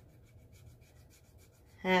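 A scratch-off card being scratched by hand: faint, quick, repeated rubbing strokes across the card's coating.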